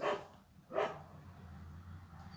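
A dog barking twice, two short barks a little under a second apart.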